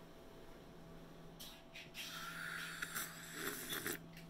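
A person slurping hot tea from a cup, drawing air in with the liquid to taste it, in a few airy surges lasting about two and a half seconds from about a second and a half in.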